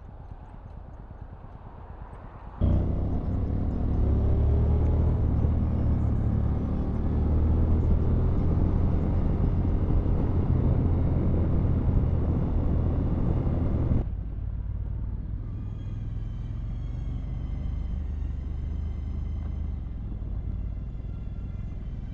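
Honda NC750X motorcycle heard from a camera mounted on the bike. For the first two or three seconds it idles with a quiet low rumble. Then comes a loud low rumble of engine and wind while riding. About 14 seconds in this drops abruptly to a quieter steady drone with a faint high whine.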